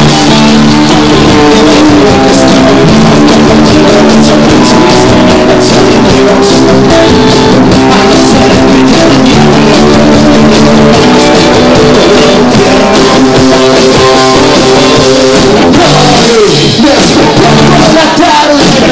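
Live rock band playing loudly: electric guitars, bass guitar and drum kit.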